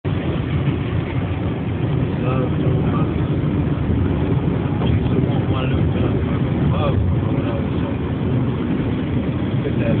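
Steady engine and tyre noise heard inside a car's cabin at highway speed.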